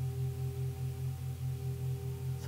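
Ambient drone music: a steady low hum with a few higher held tones above it, pulsing gently about five times a second, like a sustained singing-bowl tone.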